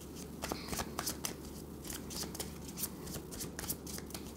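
A deck of tarot cards being shuffled by hand: a quick, continuous run of soft card clicks and slaps.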